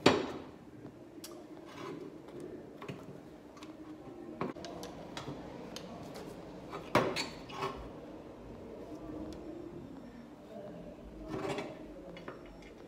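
Scattered metallic clinks and knocks of a hand tool on a brake-drum-type clutch assembly as it is taken apart, the sharpest knock about seven seconds in.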